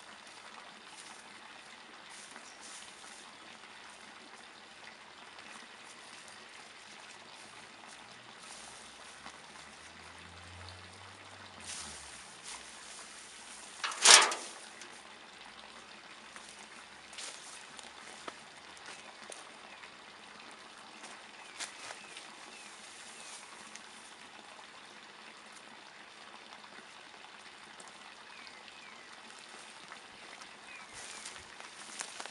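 Hands sifting and crumbling dry mulch and compost, a faint crackling rustle. One loud, sharp knock comes about halfway through.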